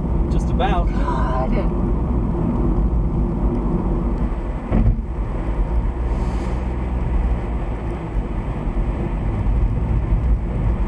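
Steady road and engine rumble inside a moving car's cabin. A brief voice sound comes about a second in, and a single knock is heard near the middle.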